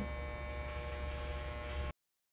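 Electric hair clippers running with a steady buzz as they cut a man's hair short. The sound cuts off abruptly just before the end.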